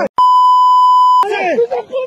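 A censor bleep: a loud, steady single-pitch beep lasting about a second that cuts into a man's speech, with the talking resuming right after it.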